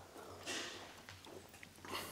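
Faint footsteps on a wooden stage floor, with a brief rustling hiss about half a second in and another near the end.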